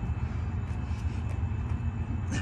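A steady low rumble of outdoor background noise, with a few faint taps as a person drops into the push-up part of a burpee.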